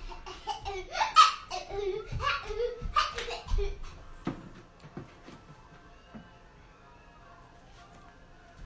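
Laughter in the first three to four seconds, loudest about a second in. It then goes much quieter, with a few soft knocks.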